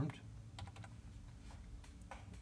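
A few faint computer keyboard keystrokes, typing a two-digit number.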